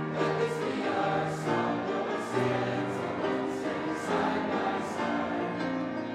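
A congregation singing a hymn together in slow, held notes.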